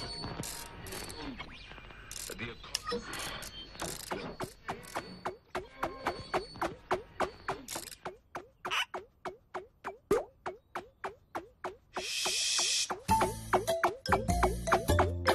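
Cartoon sound effect of a long run of quick ratchet-like clicks. Each click carries a short rising squeak, and they speed up to about three a second. About twelve seconds in comes a brief hiss.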